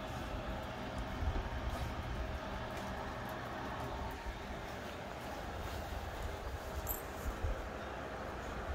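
Uneven low rumble of wind and handling noise on a hand-held microphone, over a faint steady hum.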